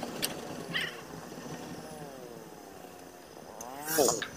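Motorcycle engine running at low road speed, its pitch sagging and rising with the throttle and climbing steeply near the end as it revs up. A couple of short clicks come in the first second.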